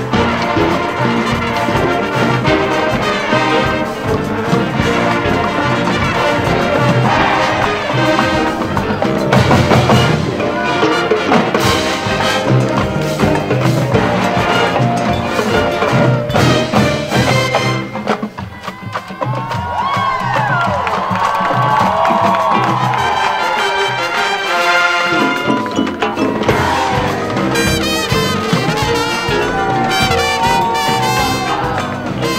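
Brass band music, trumpets and trombones over drums, playing continuously, with a brief drop in loudness a little past the middle.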